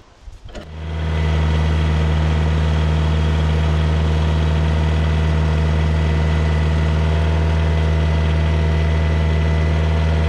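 Tractor engine running at a steady, even speed as it sets a log on the sawmill with its forks; the sound rises in over the first second and holds level, with no revving.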